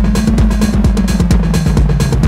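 Drum-machine beat with a bass line that slides up and then back down in pitch, played through a circuit-bent lo-fi filtered digital delay. The drum strokes come thick and fast.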